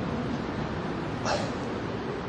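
Steady outdoor background noise, with a short whimper about a second in.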